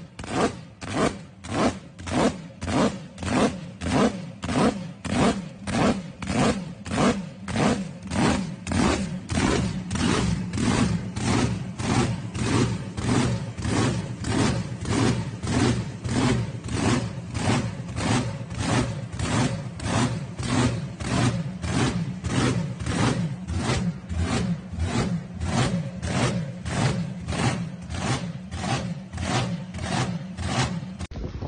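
Supercharged V8 engine of a drag boat idling with a heavy, rhythmic lope, just under two pulses a second. The lope is most pronounced in the first ten seconds, then evens out a little.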